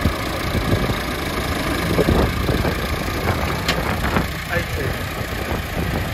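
Massey Ferguson tractors' diesel engines running steadily at low revs.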